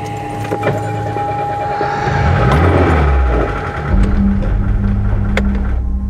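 A car engine running, revving up in pitch from about two seconds in, under a low droning music score that settles into a steady hum near the end.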